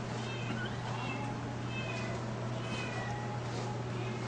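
Cats meowing: a string of short, high meows, several in quick succession, over a steady low hum.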